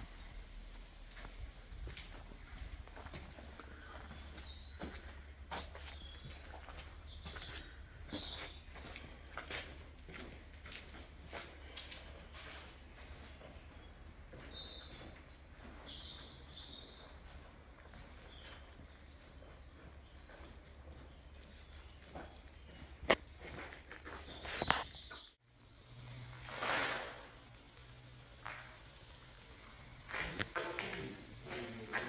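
Birds chirping here and there over footsteps crunching through leaf litter and undergrowth, with scattered snaps and taps. The sharpest snaps come near the end. A low background rumble stops suddenly a few seconds before the end.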